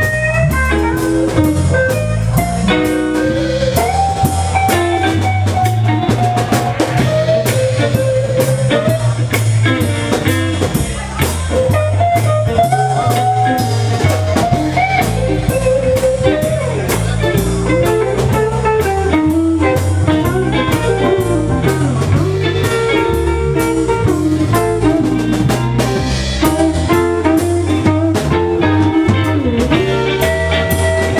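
Live electric blues band playing: electric guitars, bass guitar and drum kit, with a steady walking bass line under a lead line that bends and slides in pitch.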